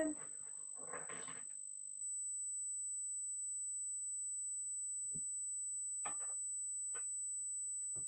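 Steady high-pitched electronic whine from audio interference, which the hosts take to come from a connected speaker; it steps up in loudness about two seconds in and holds. A few faint knocks come late on.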